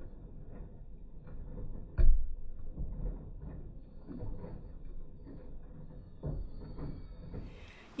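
Front-loading washing machine mid-wash: the drum turning, with laundry and soapy water sloshing and tumbling, and a heavier thud about two seconds in and again near six seconds.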